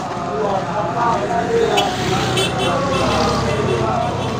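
A column of marching soldiers chanting a marching song together, with a car engine running close by that grows louder about halfway through.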